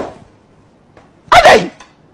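One short, loud cry with a falling pitch about 1.3 seconds in, after a brief quiet stretch; it could be a bark or a human exclamation.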